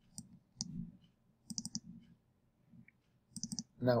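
Computer mouse clicking: two single clicks in the first second, then two quick runs of about four clicks each, one near the middle and one near the end.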